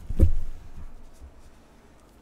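A short thump about a quarter-second in, then faint rubbing and shuffling as trading cards are handled by hand on a table, dying away toward the end.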